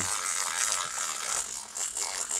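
Plastic toy fishing rod reels being cranked, making a continuous rattling whirr.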